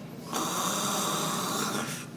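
A woman's long, rasping, snore-like breath lasting about a second and a half, as she comes round from a general anaesthetic.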